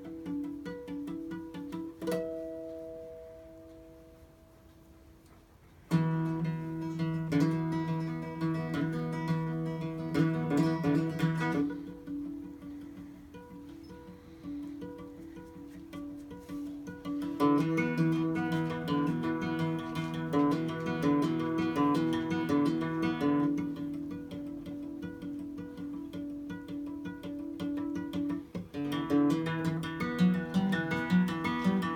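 Solo acoustic guitar playing a self-written instrumental passage. A chord rings and fades over the first few seconds, then strummed chords come in loudly about six seconds in, ease off, and build up again.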